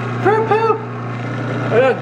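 Electric juicer's motor running with a steady low hum. A woman's voice exclaims over it, with a short "oh" near the end.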